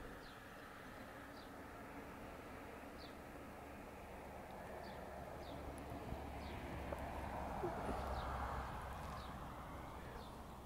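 Faint outdoor dawn ambience: a small bird gives short, high, falling chirps about once a second over a soft steady background rush that swells a little in the second half.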